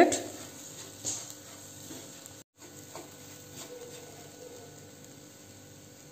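Faint taps and scrapes of a wooden spatula stirring dry rolled oats in a non-stick pan, over quiet room tone. The sound cuts out for a moment about two and a half seconds in.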